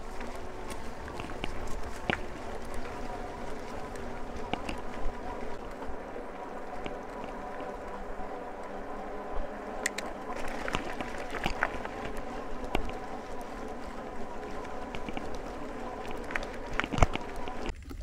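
E-bike ridden along a gravel forest track: a steady whine from its electric motor over the crunch and rattle of its fat tyres on the gravel, with scattered sharp clicks. The motor whine cuts out just before the end.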